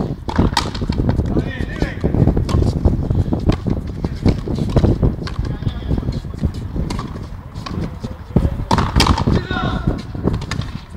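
Frontenis ball being struck by rackets and cracking off the court walls: many sharp knocks at uneven intervals in a rally.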